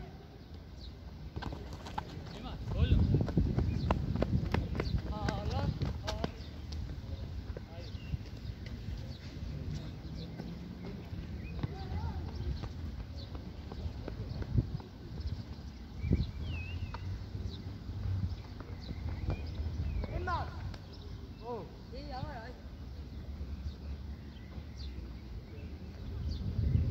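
Distant shouts and calls of people playing football across an open pitch, over a low rumble that is loudest a few seconds in, with a few scattered knocks.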